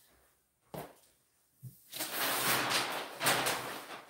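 A single sharp click under a second in, then from about halfway a rustling, scraping handling noise with a few sharper knocks.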